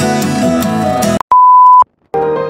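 Acoustic guitar background music that cuts off about a second in, followed by a single loud, steady, pure beep lasting about half a second, then silence.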